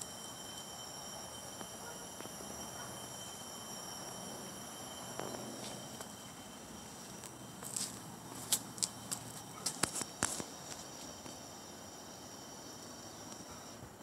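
Faint outdoor hiss with a thin steady high whine, then a quick run of sharp clicks and taps in the middle as the phone is handled and swung around.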